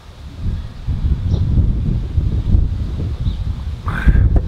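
Wind buffeting the microphone: a low, uneven rumble that builds about half a second in and keeps on gusting.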